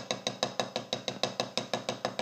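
Drumstick striking the red, soft rubber side of a Vader Percussion USA drum practice pad in a fast, even single stream, about seven strokes a second. Each stroke is a short, dry tap.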